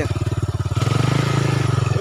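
Small quad bike engine running close by with a fast, even firing beat. It opens up with more throttle about a second in, then eases back, as the ATV works through slick mud.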